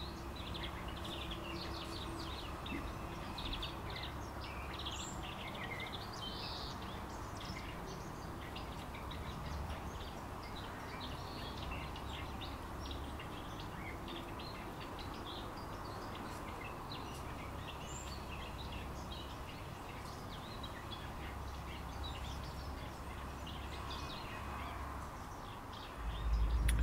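Small garden birds chirping on and off, many short high calls, over a steady low background hum of outdoor ambience.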